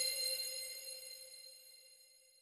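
Bell-like metallic ring of a logo intro sound effect, a chord of steady tones dying away over about a second and a half.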